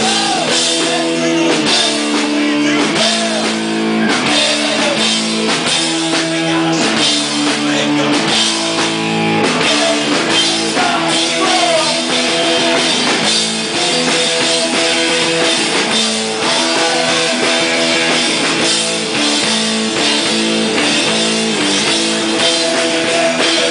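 Live rock band playing loudly on drum kit and electric guitar, a steady, continuous wall of sound.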